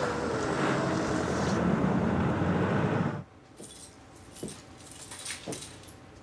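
Car and engine noise that cuts off abruptly about three seconds in. It gives way to a quiet room with a few light clicks and rustles of handling.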